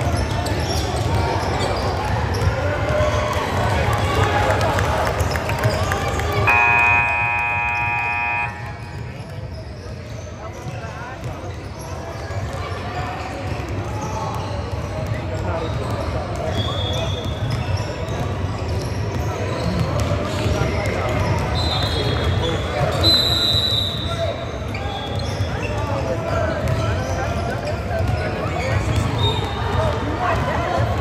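Busy gymnasium: a murmur of many voices with basketballs bouncing on a hardwood court. A scoreboard horn sounds once, loud and steady, for about two seconds a few seconds in. A few short, high squeaks come later.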